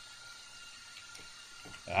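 Faint computer keyboard typing: a few soft, scattered keystrokes over low background hiss. A voice starts speaking near the end.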